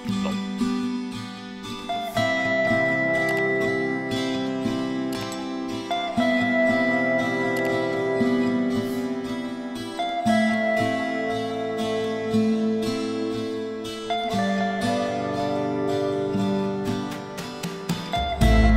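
Background music: a plucked acoustic guitar with the chord changing about every two seconds.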